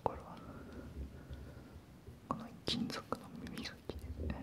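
A man whispering close to the microphone, with a few short sharp clicks in the second half.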